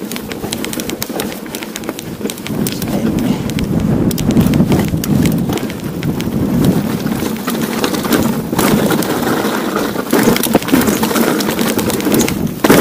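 Steel hardtail mountain bike descending a rocky gravel track: tyres crunching over stones, with constant clicks and rattles from the bike and a rushing wind noise on the microphone. It grows louder over the first few seconds as speed builds.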